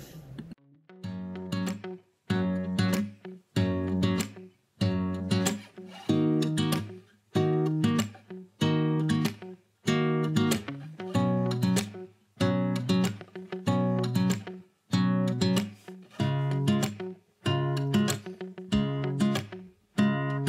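Background music: guitar chords strummed at an even pace, about one stroke every second and a bit, each ringing out and fading before the next.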